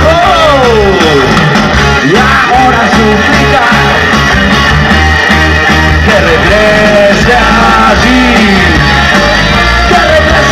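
Live garage rock band playing loud: distorted electric guitars, bass and drums, with a male singer's vocal over them. A falling pitch slide sweeps down over the first second.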